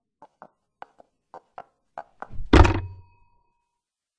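Footsteps tapping on a hard floor, mostly in pairs about twice a second and getting louder, then a heavy thunk about two and a half seconds in, followed by a brief faint ring.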